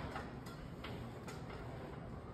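Faint, evenly spaced ticks, about two or three a second, from clamps on a JLT clamp carrier being worked with an air-driven hand tool.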